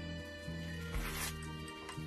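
Background music with bass notes changing about every half second. About a second in comes a brief tearing rustle, the pomelo's peel and pith being pulled apart by hand.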